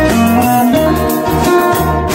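A small band playing an instrumental passage with no singing: plucked acoustic guitars and a lute over electric bass and drum kit, the bass moving in steady repeated notes under a held melody.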